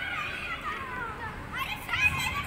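Children's high voices calling and shouting while they play, overlapping, easing off in the middle and rising again near the end.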